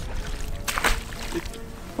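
A hooked fish splashing at the surface in shallow water at the bank, twice in quick succession a little before the middle, against steady wind rumble on the microphone.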